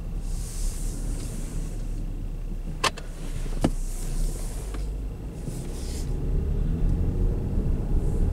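Steady low rumble inside a Dodge's cabin with the engine running. Over it are rustling and two sharp clicks, a little under a second apart, as the camera is handled and a sleeve brushes past the microphone.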